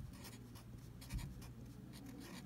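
Writing on paper: a run of faint, short scratching strokes in quick succession, over a low steady hum.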